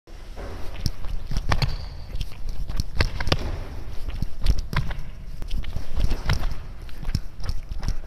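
Sneakered footsteps on a hardwood gym floor: running strides broken by quick two-step braking stops of a deceleration drill, as irregular sharp steps throughout.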